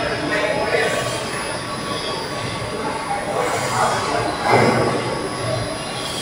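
Rotary kiln turning on its support rollers: a steady noise of the steel shell and tyre rolling on steel rollers, swelling louder about four and a half seconds in.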